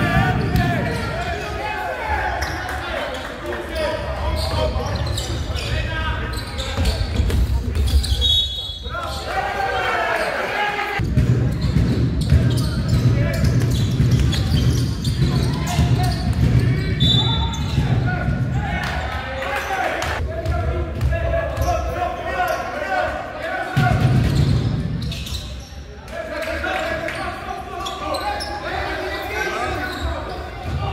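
A basketball being dribbled on a hardwood gym floor during live play, under voices shouting and calling that echo through the hall.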